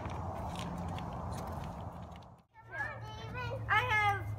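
Steady background noise with a low hum, which drops out briefly just past two seconds. Children's voices chattering follow in the last second or so.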